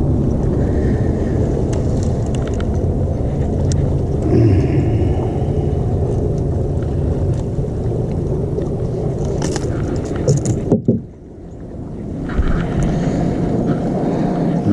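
Steady noise of a bass boat's outboard motor running, mixed with wind and water rush. It cuts off abruptly near the end, and a different short stretch follows.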